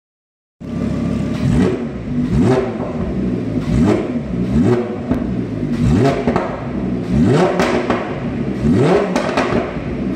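Lamborghini Huracán V10 revving through a straight-through Capristo exhaust with the Afterburner package. The throttle is blipped about once a second, each rev rising quickly and falling away, with crackles and pops on the overrun.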